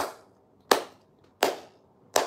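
Three sharp hand claps, evenly spaced a little under a second apart.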